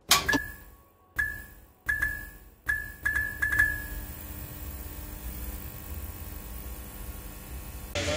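Intro sound effect of a neon sign switching on: a switch click, then about seven sharp electric zaps, each with a brief high ding and coming closer together, then a steady electrical hum from about four seconds in.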